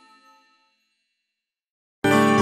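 The last ringing notes of background music dying away in the first half second, then silence.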